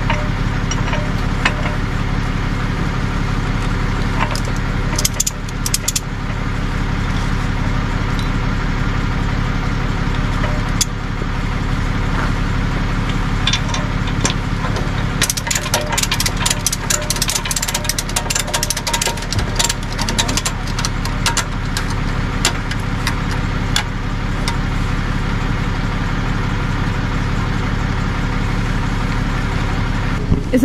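A tow truck's engine idling steadily close by, with bursts of sharp metallic clicks and rattles about five seconds in and again from about thirteen to twenty-four seconds as the wheel-lift gear is fastened around the SUV's front tyre.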